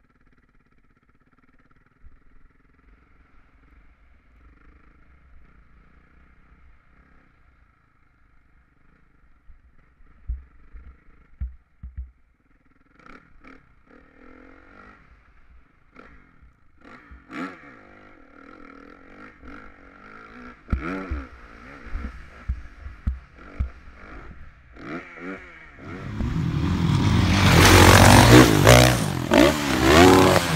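Dirt bike engine running, heard faint and muffled from an on-board camera, with scattered knocks and rattles as the bike rides over rough ground. Near the end a much louder dirt bike engine revs hard close by as a bike launches off a ramp.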